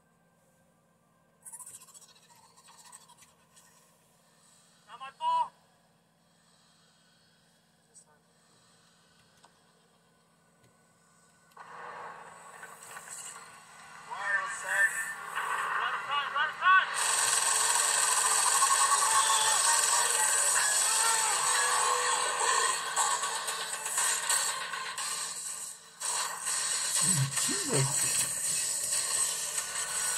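Soundtrack of a film playing on a laptop. It is almost silent, with a few faint sounds, for about the first ten seconds. Voices then come in, and from about halfway through a loud, dense mix of music and effects takes over, with a man's voice near the end.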